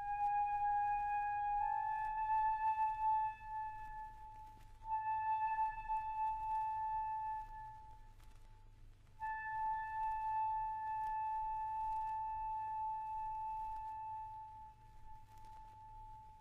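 A solo flute in a chamber orchestra plays three long, high held notes with brief breaks between them. The last note fades away as the piece ends.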